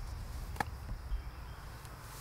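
Quiet outdoor background: a steady low rumble with one faint click about half a second in.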